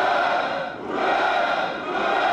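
Massed troops in parade formation shouting a long drawn-out "Ura!" in unison, one shout after another: the customary triple hurrah in reply to the commander's Victory Day congratulation. A new shout starts about a second in, and the third begins at the very end.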